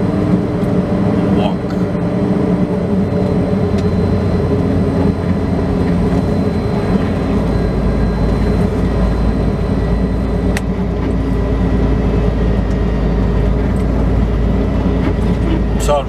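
Semi truck's diesel engine running at low speed while the rig creeps across a parking lot, heard from inside the cab; a deeper low rumble comes in about halfway through.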